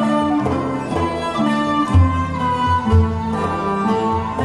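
Medieval instrumental ensemble playing: bowed fiddles holding sustained notes over plucked lutes, with a deep note swelling about once a second.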